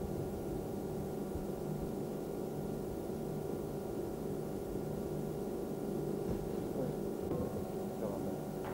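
A steady droning hum made of several held tones, unchanging throughout, with a few faint wavering tones near the end.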